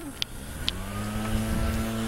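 A passing motor vehicle's engine: a steady low hum that grows louder as it approaches, with a faint rising whine. Two short clicks come just before it.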